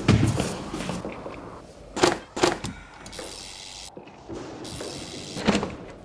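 Short knocks and thuds over music: one at the start, two close together about two seconds in, and another near the end.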